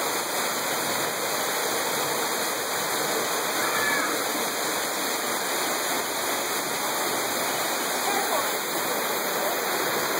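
Steady rushing noise of a waterfall, falling water running without a break.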